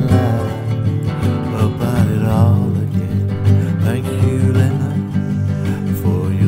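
Acoustic guitar playing a slow song accompaniment.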